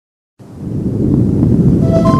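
A deep rumbling swell from a sound effect that starts suddenly about half a second in and holds steady. Synthesizer notes come in near the end as the theme music of a TV intro begins.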